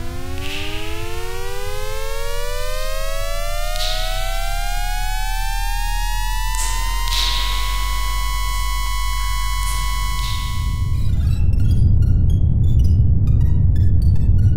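Synthesized sound-design tone: a pitched tone with many overtones glides steadily upward for about seven seconds, then holds one pitch, over a steady low hum, with a few soft swooshes along the way. About eleven seconds in it gives way to a louder low rumble with scattered short clicks.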